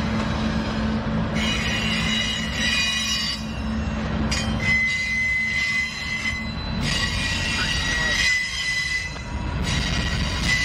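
Norfolk Southern freight train passing close by: the trailing diesel locomotives run with a steady low drone for the first half, then boxcars roll past. High-pitched wheel squeal comes and goes throughout.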